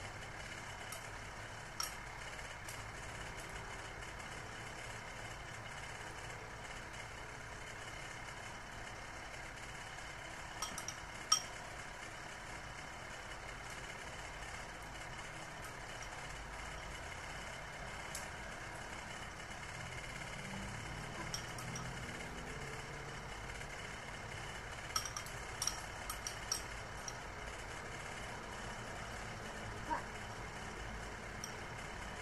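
Light clinks of a spoon against a ceramic bowl, a few at a time, the sharpest about eleven seconds in and a quick run of them near the end, over a steady low background hum.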